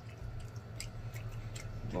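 Close-miked chewing with scattered soft, wet mouth clicks, faint over a steady low hum.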